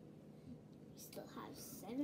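Quiet room tone with a faint hum, then soft whispered speech starting about a second in.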